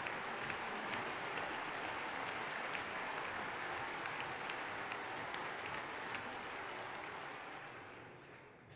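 Sustained applause from the assembled members of parliament, a dense steady clatter of many hands clapping that dies away near the end.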